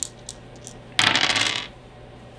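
A pair of game dice thrown onto a wooden tabletop, clattering and tumbling for about half a second, starting about a second in.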